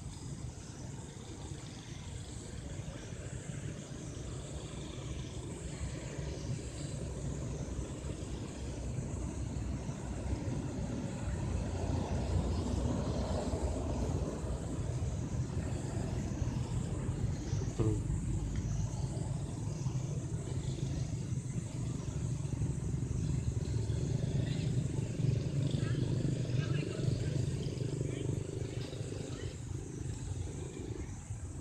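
A low, steady rumble like a motor vehicle running, growing louder after about ten seconds, with faint indistinct voices.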